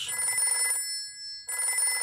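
Old-style rotary telephone ringing: two rings, each a little under a second long, with a short pause between them.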